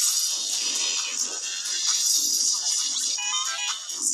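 Cartoon opening theme music, electronically processed with heavy pitch-shifting and distortion effects so it sounds harsh and bright. A short rising pitched slide comes near the end.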